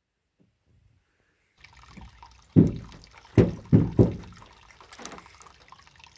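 Coconut water mixed with lime juice being slurped and gulped straight from the coconut shell. It is near silent for the first second and a half, then come four loud gulps in quick succession, with softer sounds after them.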